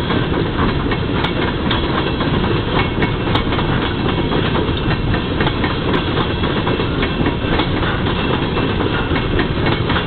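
Loaded-train coal cars rolling past close by: a steady rumble of steel wheels on the rails, with a few sharp clicks from the wheels and rail joints.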